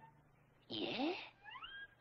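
A cartoon voice saying a short, rough "Yeah?" about two-thirds of a second in, followed by a brief rising tone near the end.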